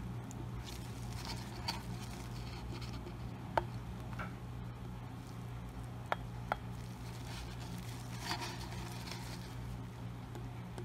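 Small handling sounds of gloved hands working a plastic ink bottle against a glass ornament: soft rustles and a few light clicks and taps, over a steady low hum.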